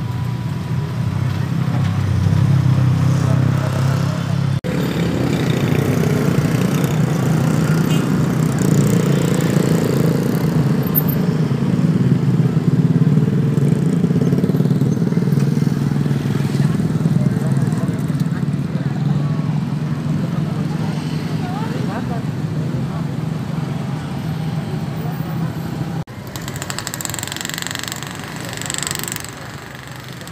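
A small engine running steadily, mixed with the chatter of a crowd of onlookers.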